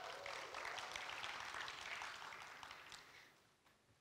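Audience applauding, dying away about three seconds in.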